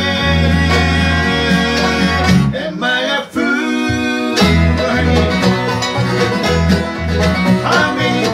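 Live bluegrass band playing an instrumental passage: banjo, acoustic guitar, mandolin and fiddle over a pulsing electric bass line.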